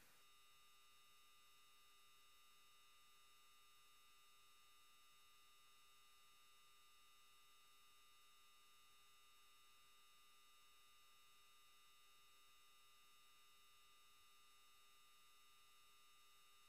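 Near silence, with only a very faint, steady electronic hum of a few held tones.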